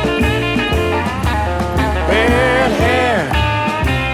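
Electric blues band playing an instrumental break with no singing: a lead line with bent notes over a steady bass line and drums.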